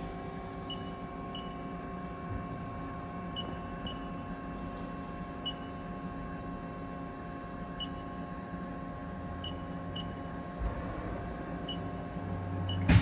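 Steady hum of a powered Haas ST-20 CNC lathe at rest, holding several constant tones, with about nine short high chirps at uneven intervals.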